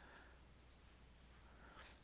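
Near silence: faint room tone with one or two faint computer mouse clicks around the middle.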